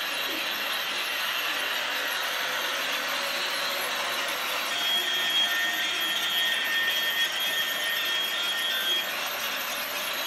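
Battery-powered toy train running around a plastic track: the steady whir of its small electric motor and wheels on the track. A higher, thin squealing tone rides on top from about five seconds in to about nine seconds in.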